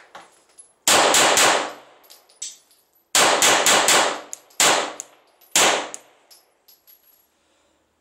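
Glock 9mm pistol fired in four rapid bursts of two or three shots each, starting about a second in, with small metallic pings between bursts typical of ejected brass casings landing.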